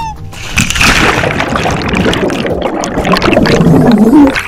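A short yell breaks off as a person and camera plunge into a swimming pool: a loud splash, then a rushing, bubbling noise heard underwater that lasts until just after the end.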